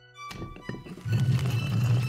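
Background score with bowed strings, swelling about a second in, after a few soft knocks near the start.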